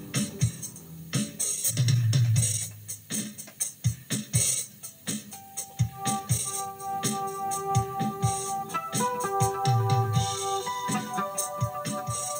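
Electric guitar played over a backing track of drums and keyboards. From about six seconds in, long held notes ring out over a steady beat.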